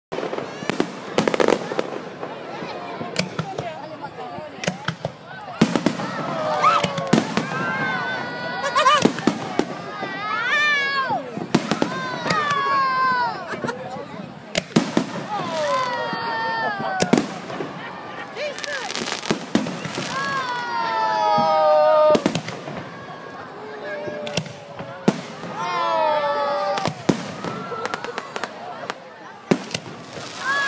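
Aerial fireworks shells bursting: repeated sharp bangs and crackling throughout.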